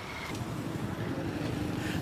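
Street traffic: a motor vehicle engine running nearby, a low steady hum that slowly grows louder.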